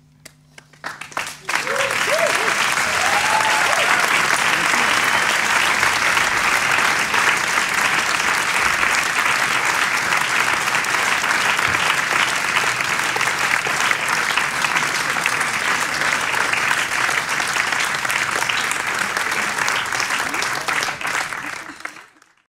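Audience applause: a few scattered claps, then full, dense clapping from about a second and a half in, with a few whoops two to three seconds in, fading out at the very end.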